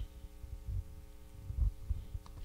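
Irregular low thumps and rumbling over a steady electrical hum, with the heaviest thumps about one and a half seconds in.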